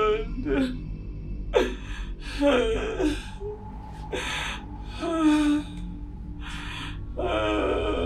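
A person gasping and moaning in about seven short, breathy bursts, some with a voiced, wavering pitch.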